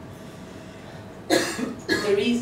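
A woman coughs once, sharply, a little over a second in, after a quiet pause.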